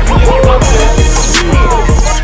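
Loud hip hop backing music: a steady beat of deep bass notes that slide down in pitch, with sharp drum hits over it.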